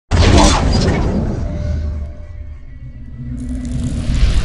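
Cinematic logo-intro sound effect: a sudden loud hit at the start that dies away into a low rumble, then a rising noisy swell near the end.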